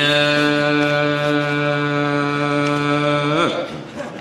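A man's voice holding one long, steady note through the microphone for about three and a half seconds, sliding slightly upward as it ends.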